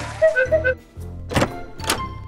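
A cartoon door-opening sound effect: two sharp clunks about half a second apart, coming after a few short musical notes over light background music.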